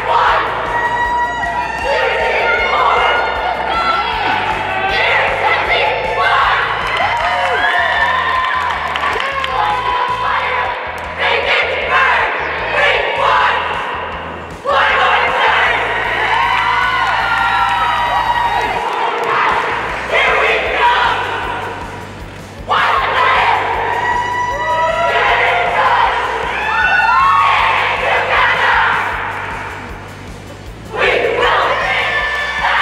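A cheer squad of girls shouting cheers in unison while performing stunts, with cheering from onlookers, in loud phrases of several seconds over background music.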